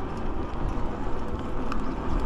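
Wind rushing over the microphone of a camera on a moving e-bike, with a low, uneven rumble and tyre noise on the asphalt.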